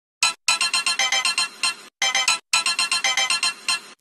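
Background music: a bright, rapid melody of repeated high plinking notes, like a phone ringtone, in short phrases with brief breaks near the start and about halfway through.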